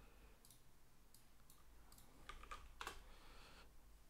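Faint, scattered clicks from a computer mouse and keyboard as a new browser tab is opened and a web address is entered, with a few quick clicks close together a little over two seconds in.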